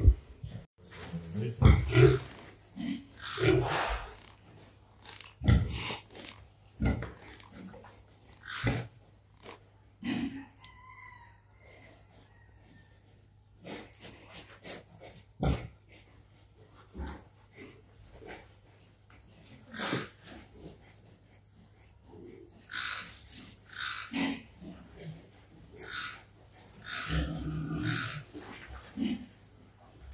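A domestic sow grunting in short, irregular bursts while she is held still for artificial insemination.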